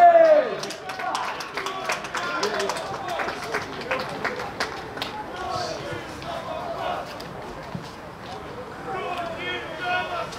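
Unintelligible shouting on an outdoor football pitch, with one loud shout at the very start. A run of short sharp knocks follows in the first few seconds.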